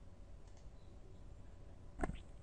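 Quiet room tone with a steady low hum and a few faint clicks, one about half a second in.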